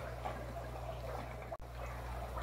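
Steady fish-room background: water trickling from aquarium filters over a low, steady electrical hum from running equipment. The sound drops out briefly about one and a half seconds in.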